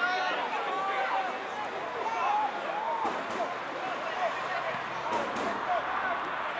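Shouts and calls from footballers across an open pitch during play, no clear words. Two short sharp knocks about five seconds in.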